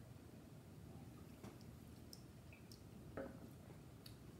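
Near silence: room tone with a few faint, short clicks and one slightly louder brief sound about three seconds in.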